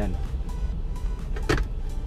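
A single sharp click about one and a half seconds in, as a tablet-style electronic logging device is set back into its dashboard mount, over a steady low rumble in a truck cab.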